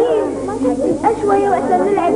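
Many girls' voices calling out and chattering at once, overlapping with no pause, as a group plays a game together.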